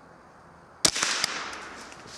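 A single shot from a Glenfield/Marlin Model 60 semi-automatic .22 rifle, a sudden sharp crack a little under a second in. A second sharp crack follows less than half a second later, then a fading rustle and echo.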